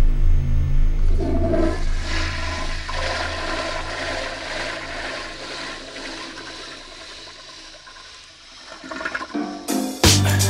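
Toilet flushing: a rush of swirling water swells about a second in and slowly drains away over several seconds. A low drone dies out at the start, and music cuts in near the end.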